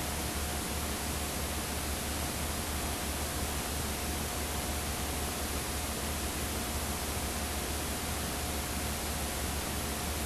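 Steady electronic hiss with a low hum and a faint steady whine: the background noise of a video playback and capture chain running with no programme sound, as on a blank stretch of tape.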